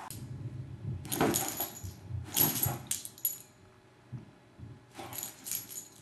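Metal tags on a vizsla puppy's collar jingling as she moves, in three bursts: about a second in, for about a second from two seconds in, and again near the end, over a soft rustle of bedding.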